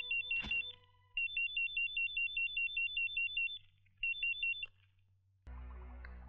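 Electronic telephone ringer warbling: a fast, high two-tone trill in three bursts. The first burst ends just after the start, a long one of about two and a half seconds follows, and a short one comes near the end.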